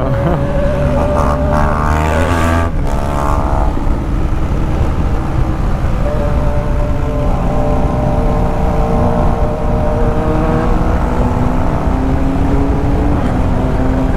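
A BMW R1200 GS Adventure's boxer-twin engine running at about 80 km/h, with rushing wind noise. There is a short break in the engine note about three seconds in as it shifts up from third to fourth gear, and after that the note slowly climbs as the bike speeds up in fourth.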